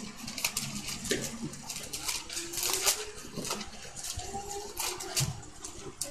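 Thin Bible pages rustling and flicking as they are turned in a search for a passage: a run of short, crisp papery flicks at an uneven pace.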